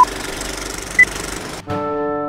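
Film-leader countdown effect: a film projector's steady rattle with a short beep on each count, the last beep higher-pitched. About a second and a half in, the rattle cuts off and brass music begins.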